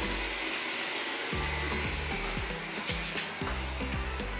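Background music with bass notes and a beat, over a steady rushing noise that runs unbroken through the room.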